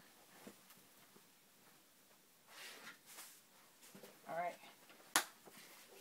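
Quiet handling of cardstock and a Crop-a-Dile hole punch, a brief murmur of a voice, then one sharp click about five seconds in as the punch is squeezed through the paper.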